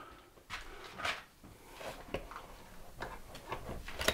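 Faint footsteps on a shop floor with a few light knocks and clicks.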